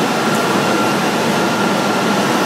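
Feed extrusion plant machinery running: a loud, steady mechanical noise with a thin, steady whine over it.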